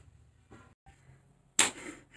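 Quiet room tone, then about one and a half seconds in a sudden short whoosh of noise that fades quickly.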